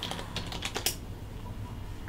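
Typing on a computer keyboard: a quick run of five or six keystrokes in about the first second as a password is entered.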